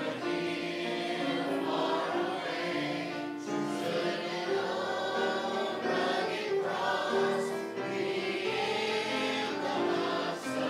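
Small church choir of men, women and children singing a hymn together, accompanied by acoustic guitar; the voices come in right at the start.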